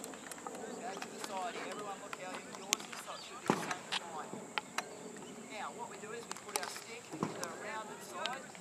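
Field hockey sticks knocking against hard balls: a scattering of sharp, irregular clicks, the loudest about two and a half to three and a half seconds in. Children's voices chatter faintly in the background.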